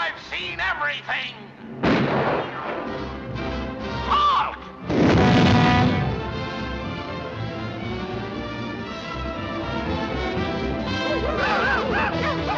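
Orchestral cartoon score with two loud crash sound effects, one about two seconds in and a longer, louder one about five seconds in. After the second crash the music runs on steadily.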